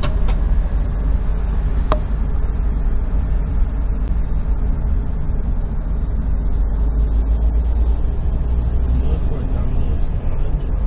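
Steady low rumble and road noise inside a moving vehicle, with one short sharp click about two seconds in.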